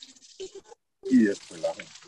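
Garden hose water spattering faintly over an orchid's bare roots as they are rinsed. The sound cuts out completely for a moment just before a second in, then a short burst of a voice follows.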